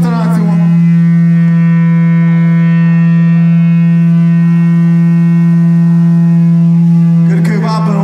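A loud, steady low drone note from an amplified instrument through the PA, held without change with a stack of overtones above it. Near the end, warbling, gliding tones come in over it.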